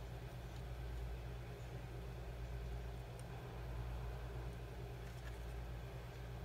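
A steady low hum with a few faint ticks over it.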